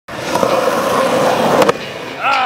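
Skateboard wheels rolling on asphalt, a steady loud roar, cut off by one sharp clack about one and a half seconds in.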